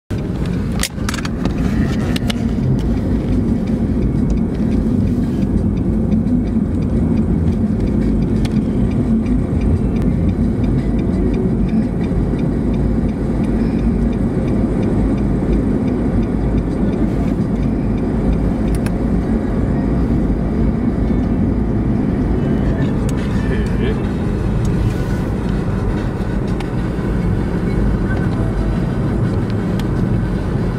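Steady low rumble of road and engine noise heard from inside the cabin of a moving car, with a few sharp clicks in the first couple of seconds.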